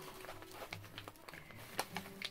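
Faint handling of a resealable packet being pulled at to open it: soft rustling with a few small clicks.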